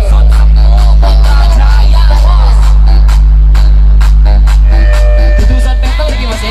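Electronic dance music played very loud through stacked sound-system speakers. A long, steady, deep bass note begins right at the start and drops out about five and a half seconds in, under a percussive beat.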